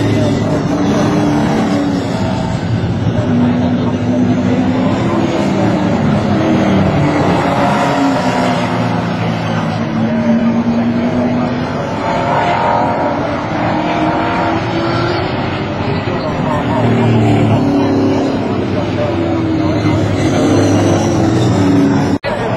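Racing cars' engines running hard as several cars lap the circuit. The pitch rises and falls again and again as they accelerate, change gear and pass.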